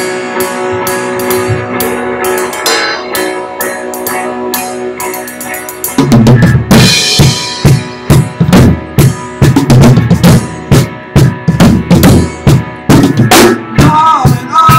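Drum kit played along to a backing song. For about six seconds the song's sustained instrumental intro carries only a few light drum hits; then the full kit comes in with a cymbal crash and a steady, loud bass-drum and snare beat.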